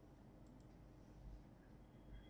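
Near silence with a faint click about a second and a quarter in: a computer mouse button clicked to advance a slide.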